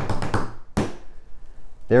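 A quick drum roll of taps, hands drumming on a tabletop at about ten strokes a second, finished off just under a second in by one louder slap.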